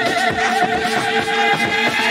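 Live-looped music: wordless vocals with wavering, warbling held tones layered over a steady looped percussion beat.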